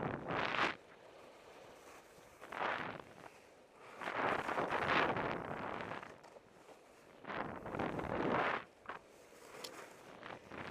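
Skis or a snowboard sliding and scraping over spring snow in a series of turns, heard as surges of hiss every couple of seconds with quieter glides between, mixed with wind noise on the microphone.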